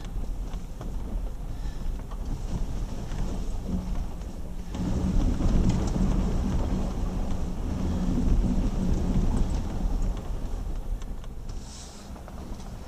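Jeep WK2 Grand Cherokee driving slowly over a rough dirt and rock trail, heard from inside the cabin: a steady low rumble of engine and tyres. It grows louder and rougher about five seconds in and eases off near the end.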